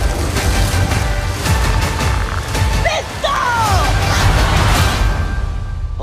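Loud, dense trailer music with heavy bass and many sharp hits, mixed with action sound effects.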